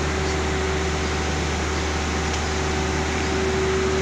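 Steady, unchanging drone of running palm oil mill processing machinery, with a constant mid-pitched hum.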